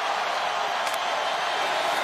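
Steady stadium crowd noise, a large crowd's even din during a pause before the snap, with a faint click near the middle.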